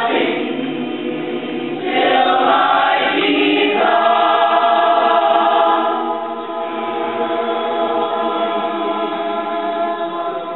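Mixed high school choir of male and female voices singing in harmony, holding long chords. It swells about two seconds in and eases off a little after six seconds.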